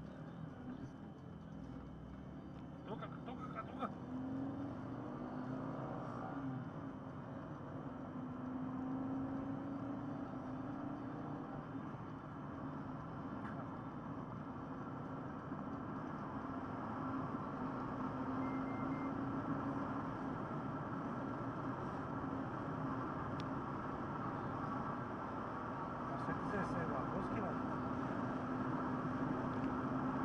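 Car engine and tyre noise heard from inside the cabin while driving on the highway. The engine's hum rises a little in pitch over the first several seconds as the car gathers speed, then holds steady.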